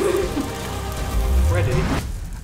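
Paper confetti from just-fired party confetti cannons raining down and rustling over people and a table, as a steady noisy hiss under music, with brief vocal exclamations.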